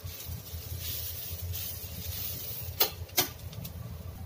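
A wooden spatula stirring and scraping grated radish stir-fry in a nonstick frying pan, over a low steady hum. Two sharp knocks about half a second apart come near the end.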